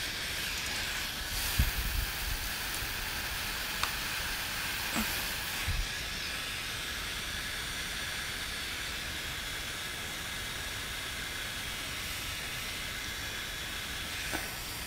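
Electric heat gun running: the steady hiss of its fan blowing hot air as it shrinks heat-shrink tubing onto wire ends. A few faint knocks in the first six seconds.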